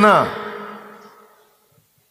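The end of a man's loud, drawn-out exclamation into a microphone, fading away over about a second, then a moment of silence.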